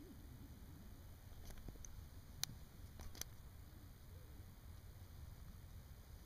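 Near silence, with a few faint small clicks a little before the middle.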